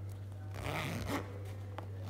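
A zipper on a fabric makeup bag being pulled closed. There is one pull about half a second in, lasting just over half a second, then a small click.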